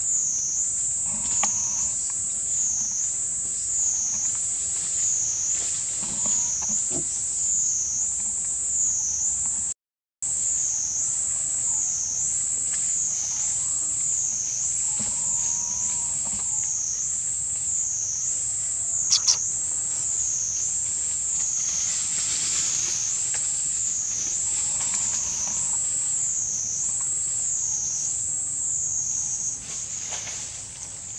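A loud, high-pitched insect chorus buzzing without pause, swelling and fading about once a second. It breaks off for a moment about a third of the way in, and there is one sharp click about two-thirds of the way through.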